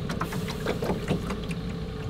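Outboard motor running steadily, pushing a small jon boat along, with a low rumble and a steady hum, plus scattered light knocks.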